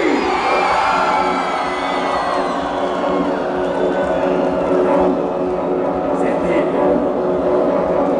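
Loud club dance music with steady held synth tones. A man's voice calls over the PA through a microphone near the start, over crowd noise.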